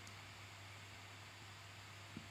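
Near silence: room tone with a faint steady hiss and a low hum.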